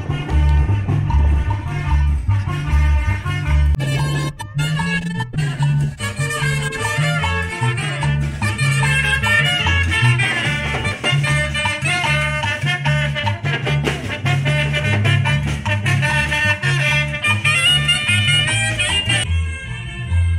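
Live street brass band playing upbeat Latin dance music, with saxophone and brass over snare drums and a steady, rhythmic bass line.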